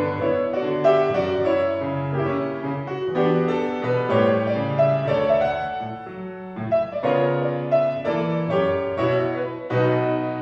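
Solo grand piano played: a continuous passage of melody over chords, dropping softer for a moment about six seconds in before building again.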